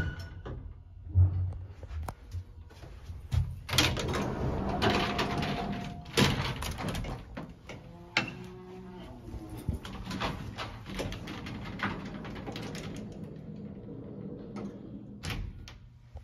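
An old elevator's collapsible metal gate and swing door being worked by hand: several sharp knocks and a loud metal clatter in the first six seconds, then quieter rattling.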